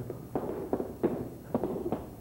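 Irregular taps of an improvised cane-and-shoe dance: shoes and walking-cane tips striking a hard stage floor, about two or three taps a second.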